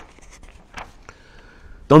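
Soft paper rustle from the pages of a large open Quran being handled, with one short rustle a little under a second in. At the very end a man's voice starts reciting Arabic.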